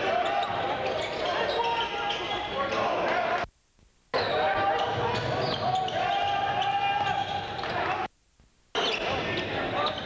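Gym game sound of a basketball bouncing on the hardwood court over the voices and shouts of players and spectators in a large hall. The sound drops out suddenly to near silence twice for about half a second, a little past the third second and again at about eight seconds.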